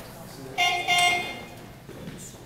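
An electronic horn-like tone from the competition clock sounds twice in quick succession, about half a second in. It is the 30-seconds-remaining warning signal for the lifter's attempt.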